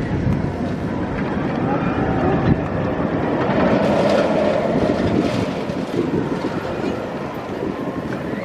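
B&M hyper coaster train running along its steel track, a steady rumbling noise that swells about halfway through, with people's voices mixed in.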